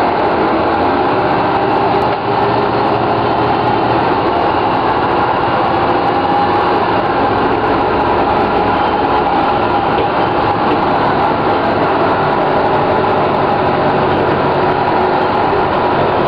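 Detroit Diesel Series 50 diesel engine of a 1997 Orion V transit bus running steadily, with a whine held at a steady pitch. The uploader says the turbocharger is slightly overblown.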